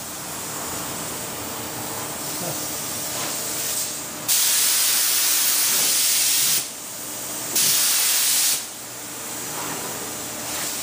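Cup spray gun spraying sanding sealer in loud hissing bursts as the trigger is pulled: one about four seconds in lasting a couple of seconds, and a shorter one about a second after it ends. A quieter steady hiss runs between the bursts.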